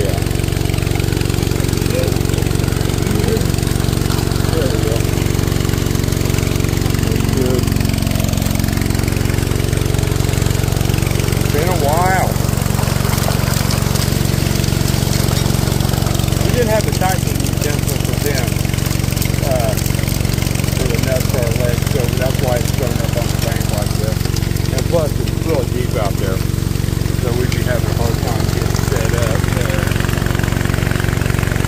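Small gold suction dredge's gasoline engine and pump running steadily at a constant speed, with water rushing through the sluice.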